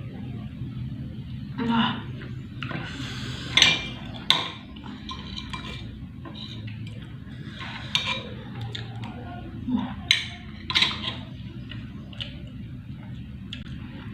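Metal spoon and fork scraping and clinking against a glass plate, in short scattered strokes as the last food is gathered up.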